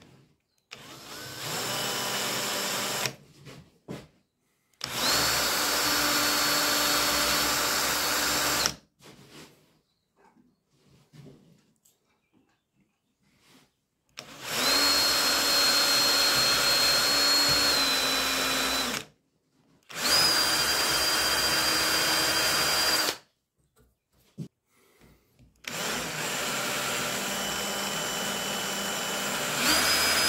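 Cordless drill boring into a turned wooden handle, run in five bursts of a few seconds each with short pauses between, a steady high motor whine in each run; the first run is quieter than the rest.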